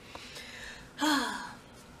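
A woman sighing out loud: a breathy, voiced out-breath about a second in, falling in pitch.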